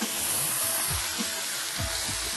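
Chicken thighs sizzling on a hot flat-top griddle as they are laid on skin-side down, a steady hiss that is strongest in the first second as the meat hits the plate.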